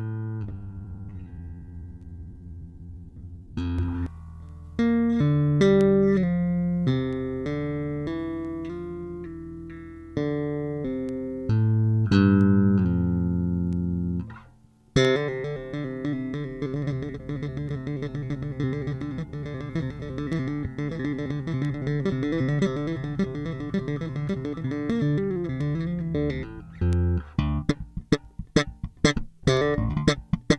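Electric bass guitar played solo. It opens with slow, ringing single notes and chords, shifts about halfway into a fast, busy run of notes, and ends in a string of short, sharp percussive notes.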